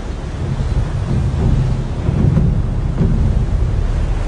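A large waterfall's heavy flow of falling water: a loud, steady, deep rumble with spray hiss above it.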